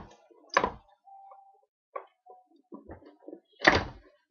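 Two loud, sharp thuds about three seconds apart, with a few fainter clicks and brief short tones between them.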